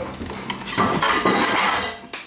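Utensil clinking and scraping in a handheld cup, growing denser and louder for about a second before it dies away near the end.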